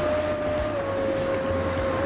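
City street traffic with a steady low rumble. Over it sounds a single long, even tone that sinks slightly in pitch and fades out near the end.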